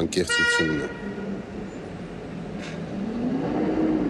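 A short horn toot about half a second in, with traffic-like noise behind it. Near the end a low hum rises and falls in pitch.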